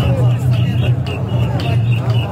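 Mikoshi bearers chanting in rhythm as they shoulder the shrine, over the babble of a dense crowd.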